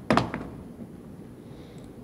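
A single short knock or thump just after the start, followed by a couple of faint ticks, then quiet room tone.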